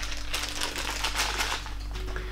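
Rapid, irregular small clicks and rustling as packaging is handled, unpacking the ear-clip electrodes of a CES Ultra cranial electrotherapy stimulator.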